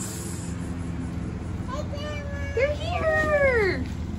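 Young children calling out excitedly in high voices, with long falling calls loudest in the second half, over the low steady running of a vehicle engine pulling up close.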